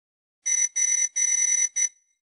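Electronic intro sound: four short ringing tones at one steady high pitch, the third the longest.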